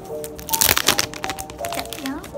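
Background music with soft held notes, and a loud crackling rustle of a stack of paper sticker sheets being handled and flexed, about half a second in and lasting about half a second.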